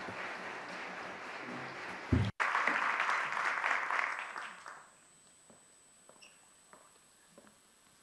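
Audience applauding. The applause swells briefly about two seconds in and dies away about five seconds in.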